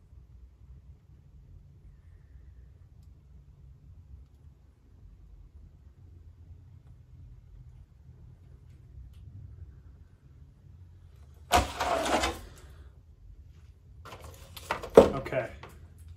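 A long paint scraper drawn slowly through thick wet acrylic across a canvas, very faint under a low hum. About twelve seconds in there is a short loud scrape, and a sharp knock comes near the end.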